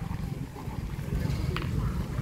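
Wind rumbling low on the microphone, with faint voices of people in the background and a faint click a little past the middle.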